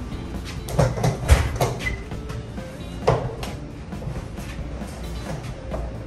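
Several sharp knocks and clunks as a black equipment case on casters is pushed through a doorway over the threshold: a cluster about a second in, and another near three seconds. Background music runs underneath.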